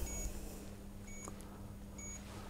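Short electronic beeps from the keypad of a Marsden DP3800 weighing indicator, one for each number key pressed as a wheelchair's weight is keyed in. Two brief beeps about a second apart, with a third at the very end.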